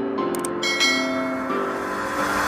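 Background music with a sound-effect mouse click about half a second in, followed by a ringing notification-bell chime.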